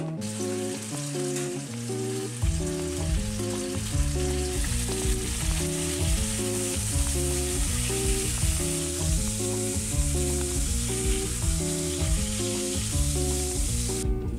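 Pieces of meat frying in a nonstick pan, a steady sizzle that grows louder a few seconds in. Background music plays over it, its bass line coming in about two seconds in.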